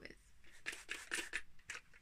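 Faint rustling of damp hair being handled by hand and flipped over, a quick series of short brushing strokes.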